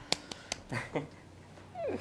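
Three quick hand claps, then a few short high vocal squeaks and a cry that falls steeply in pitch near the end.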